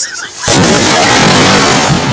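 Homemade sparkler bomb, a bundle of sparklers taped tight with electrical tape, going off about half a second in: a sharp bang followed by loud, steady noise that lasts about a second and a half.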